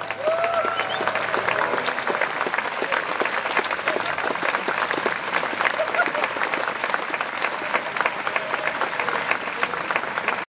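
Audience applauding steadily, with a few voices calling out.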